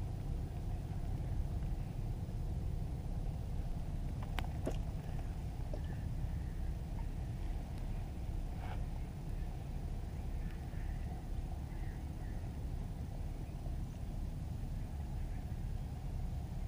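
Wind buffeting the microphone as a steady low rumble on open water, with a couple of sharp clicks about four and a half seconds in.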